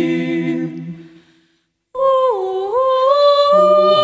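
A cappella vocal group singing unaccompanied: a held chord fades out about a second in, and after a brief silence a new phrase starts in high voices, with lower voices joining near the end.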